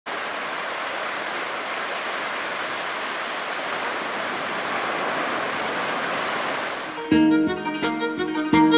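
Steady rush of sea surf. About seven seconds in, music starts with sharp, ringing notes.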